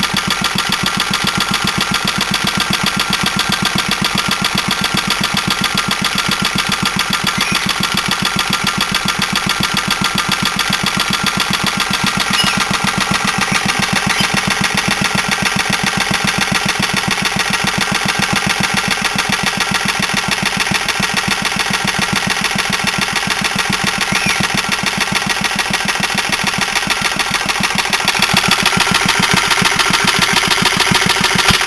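Small old air-cooled single-cylinder four-stroke engine running steadily at a slow, even firing beat, a little louder near the end.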